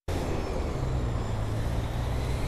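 Steady low rumble of road traffic with a faint hiss above it.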